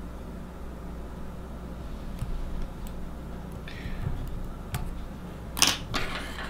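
Faint small ticks and handling noises from whip-finishing the thread head of a fly at the tying vise, over a steady low hum. A louder short noise comes near the end.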